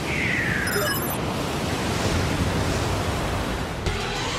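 Broadcast logo sting: a steady rushing whoosh of noise, with a falling swoosh in the first second and a brief high shimmer about a second in.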